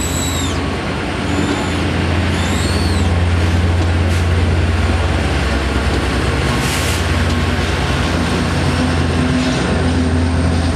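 Amtrak Cascades Talgo passenger train passing close by, its cars rolling past with a steady rumble and a few short high whines in the first three seconds. The sound swells as the trailing diesel locomotive passes, with a deep engine drone.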